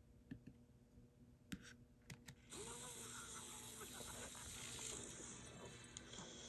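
A few soft clicks of a mouse or trackpad while seeking along a video's timeline. About two and a half seconds in, the video's game audio starts playing faintly through the laptop speaker as a steady hiss with faint tones in it.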